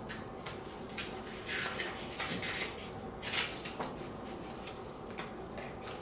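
Pages of a small paperback guidebook being leafed through by hand: a series of short, irregular papery rustles and flicks.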